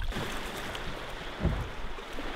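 Seawater sloshing and splashing steadily around a person standing chest-deep in the sea, with two brief faint vocal sounds, one near the start and one about one and a half seconds in.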